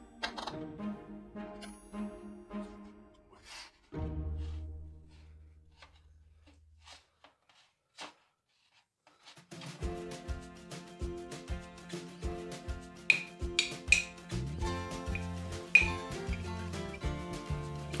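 Background music. It drops out for a few seconds in the middle and comes back with a steady beat.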